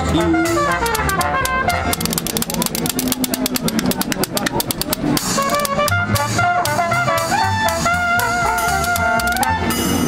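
Traditional jazz street band playing: trumpet and trombone over double bass, banjo and cymbal-fitted percussion. A fast run of percussion strokes comes in the middle, then the horns hold long notes and the tune ends on a final held chord just before the end.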